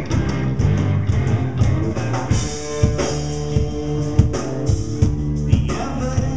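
A reggae-rock band playing an instrumental passage live: electric guitars, electric bass and drum kit, with a held guitar note through the middle and repeated drum and cymbal hits.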